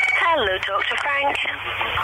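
Speech heard through a narrow telephone or radio line, thin-sounding with the highs cut off.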